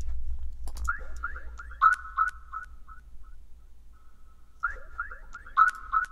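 Playback in a music production session of a short synth sound followed by delay echoes that repeat it several times and fade away, triggered twice: about a second in and again at about four and a half seconds. A low steady hum runs underneath. The producer hears the added echo as clashing with the sound's own echo.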